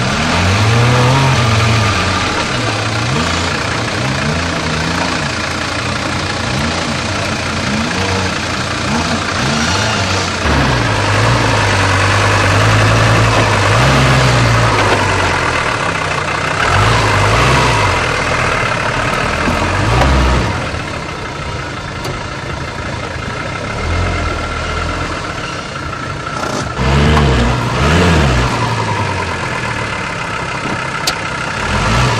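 Mercedes-Benz G-Class off-roader's engine revving up and dropping back again and again while crawling over a steep dirt trial obstacle, with a couple of sharper surges near the end.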